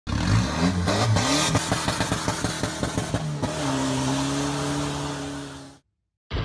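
Racing engine revving in quick rising blips, then a rapid run of sharp pops about seven a second, then settling into a steady held note that fades out just before the end.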